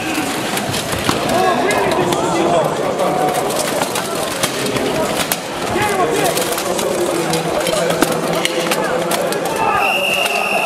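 Steel weapons striking plate armour and shields in many quick, irregular clanks during an armoured melee, over shouting voices.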